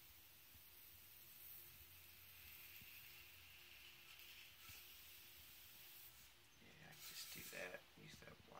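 Near silence: a hot-wire groove cutter drawn slowly through foam board along a metal straightedge, with a faint rubbing and scraping that is a little louder near the end.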